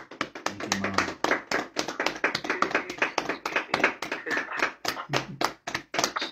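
Hand clapping: a quick, uneven run of claps, several a second, that goes on without a break. A faint voice sounds briefly under it.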